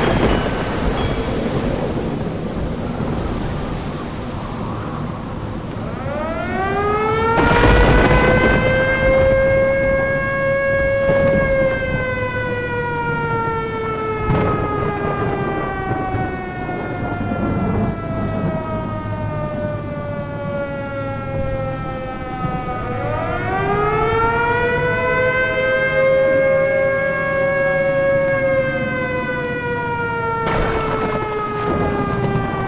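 Thunderstorm sound effect: steady rain with rolls of thunder, one right at the start and others about 8 and 14 seconds in. A siren winds up in pitch about six seconds in, slowly falls, and winds up again a little after twenty seconds.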